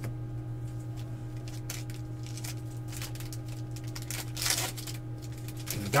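Trading cards being handled and sorted by hand: soft rustles and light clicks of card stock sliding against card stock, with a louder swish about four and a half seconds in. A steady low electrical hum runs underneath.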